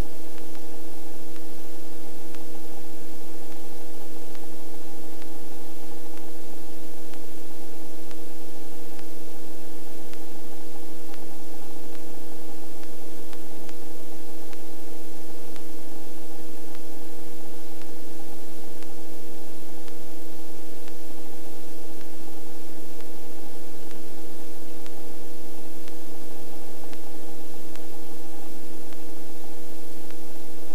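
Cockpit noise of a Robinson helicopter in steady flight: an even drone of several steady tones from the engine and rotor over a constant rushing hiss.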